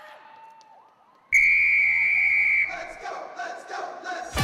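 Faint crowd shouting and cheering, then about a second in a loud, steady whistle blast that lasts over a second and cuts off, followed by shouted voices.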